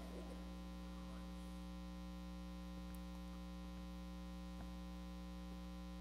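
Steady electrical mains hum, a low buzz of many stacked steady tones, with a faint click about two-thirds of the way through.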